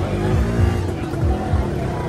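Motorcycle engines running among a crowd of parked bikes, with background music over them.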